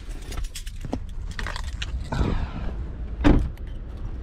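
Car keys on a key fob jangling and clicking in the hand while getting out of a car, with one loud thump a little over three seconds in.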